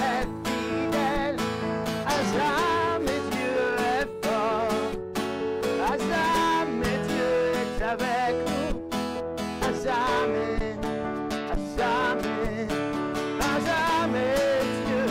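A worship song played live: an acoustic guitar strummed with a Yamaha electronic keyboard accompanying, and a man singing held, wavering notes over them.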